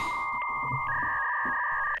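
Electronic sound effect of steady synthetic tones: a buzzy tone held throughout, with a higher beep over it that steps down to a lower pitch a little under a second in.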